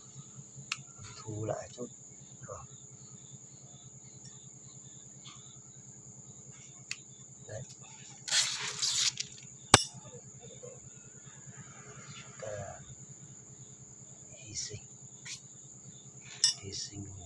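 Crickets keep up one steady high trill throughout. About eight seconds in there is a short rustle, then a single sharp snip, from a cutting tool working on the branches of a small potted bonsai.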